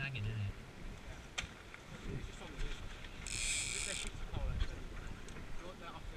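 Light wind buffeting the microphone of a camera mounted aboard a small sailing dinghy, over the wash of water along the wooden hull. A short hiss comes about three and a half seconds in.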